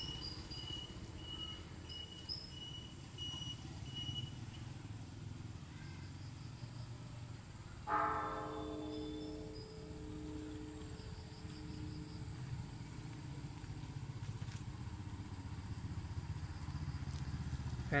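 Large pagoda bell struck once about eight seconds in, its deep tone ringing and slowly fading with a pulsing waver. Under it runs a steady low vehicle engine rumble.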